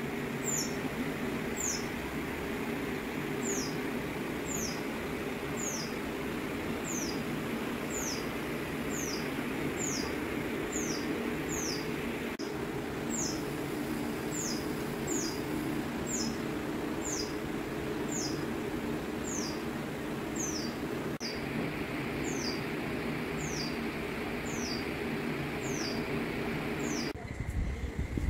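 A bird calling over and over with a short, high, falling chirp, evenly spaced about once or twice a second, over a steady low background hum. About a second before the end the hum gives way to a lower, rougher rumble while the chirping goes on.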